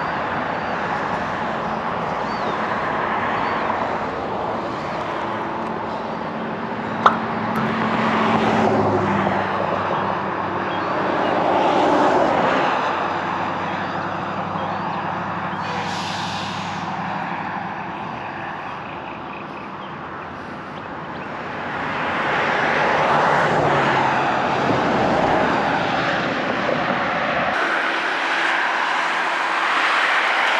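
Outdoor vehicle noise: engine hum that swells and fades as vehicles pass, with a single sharp click about seven seconds in.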